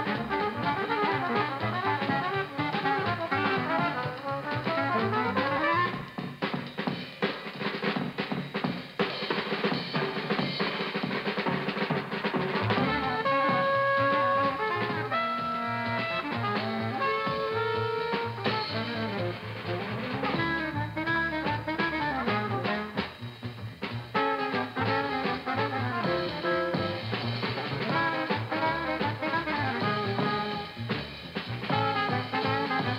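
Small cool-jazz combo of saxophone, trumpet, double bass and drum kit playing. A saxophone line opens, a drum-kit passage comes in about six seconds in, and long held horn notes sound around the middle before the band plays on.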